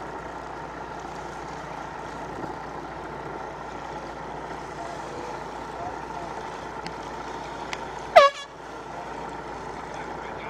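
One short air-horn blast about eight seconds in, the kind of sound signal a race committee gives during a sailboat race, over a steady background of wind and water noise.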